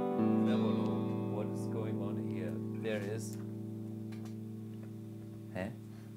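Clean electric guitar chord ringing out and slowly fading, played dry with the reverb switched off.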